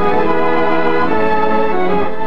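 Newsreel background music: sustained organ-like chords held and shifting, between lines of narration.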